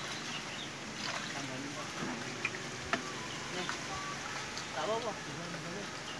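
Water trickling and sloshing as a wet fine-mesh net bag is lifted from a river, over a steady outdoor wash, with a few small sharp clicks.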